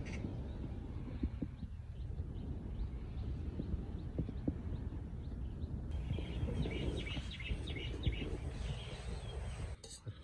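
Outdoor beach ambience: a steady low rumble of wind on the microphone, with faint bird chirps from about six seconds in.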